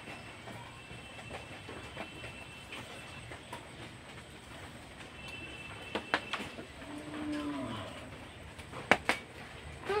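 Faint sounds of eating rice and curry by hand: fingers mixing food on a plate, chewing, and a short hum about seven seconds in. A few sharp clicks, the loudest just before the end.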